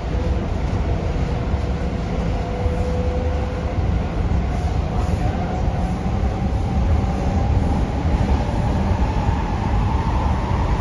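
Hyundai Rotem K-Train electric multiple unit heard from inside the carriage while running: a steady, dense rumble of wheels on track. Over it, a thin motor whine rises slowly in pitch through the second half.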